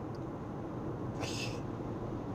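Steady road and engine noise inside a moving car, with a brief high-pitched cry from a pet about a second and a quarter in.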